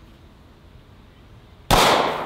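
A single shot from a Sig Sauer P365XL 9 mm pistol firing full metal jacket ammunition, near the end, sharp and loud with a reverberating tail.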